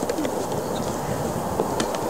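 Steady outdoor background noise with a few faint clicks and one sharper tick near the end.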